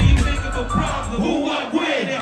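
Hip hop beat with heavy bass over a concert crowd shouting along with the rappers. The bass drops out near the end.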